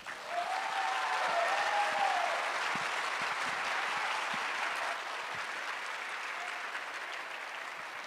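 Audience applause that swells at once, is loudest in the first two seconds and then slowly dies away, with a drawn-out call over it in the first two seconds.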